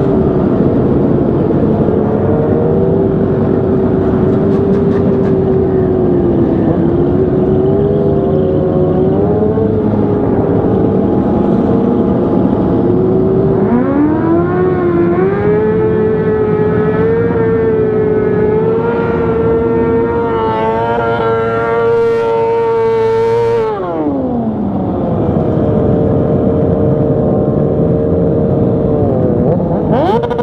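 Motorcycle engine heard from the rider's own seat, running at low steady revs in slow traffic; about halfway through the revs climb and are held high for about ten seconds, then fall away slowly. Other motorcycles in the group run underneath it.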